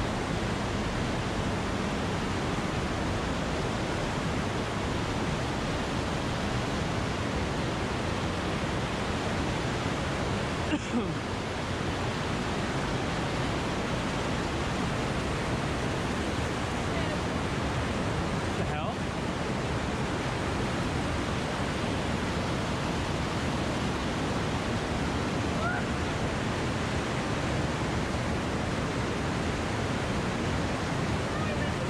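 Steady rush of white water: a fast river pouring over boulders and small cascades in rapids.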